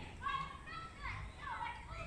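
Faint children's voices in the background: a few short, high-pitched calls that slide in pitch.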